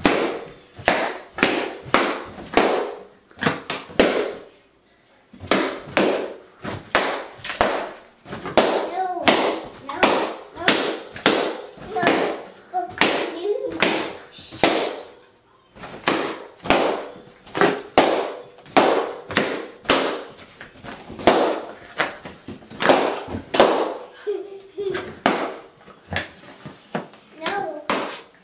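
Latex party balloons popped one after another by a small terrier biting them: dozens of sharp bangs in quick succession, with a few brief pauses.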